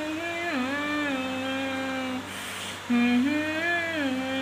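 A woman humming a song melody through the hand clamped over her mouth, the tune muffled as she holds and slides between notes. It breaks off briefly a little past halfway and comes back louder.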